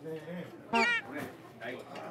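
A single short, loud, pitched cry about a second in, its pitch bending as it goes, over faint voices.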